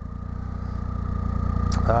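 Triumph motorcycle engine running as the bike rolls along, a low pulsing rumble that grows steadily louder.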